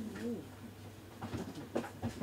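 Light clicks and rubs from gloved hands handling a metal camera lens, bunched in the second second, over a steady low hum. A faint low wavering sound comes about a quarter of a second in.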